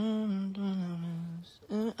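A man humming two long, drawn-out low notes, the second a little lower and sagging in pitch, followed by a short vocal sound near the end.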